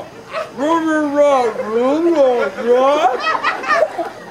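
A person's voice making a string of long, wavering wordless cries, each sliding up and down in pitch.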